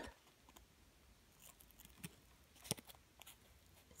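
Near silence with a few faint clicks and rustles of a small strip of sandpaper being handled between the fingers, the clearest one a little under three seconds in.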